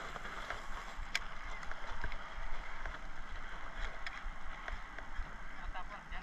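Water and wind noise around a small fishing boat, with a few sharp light clicks scattered through it as a spinning rod and reel work a topwater lure.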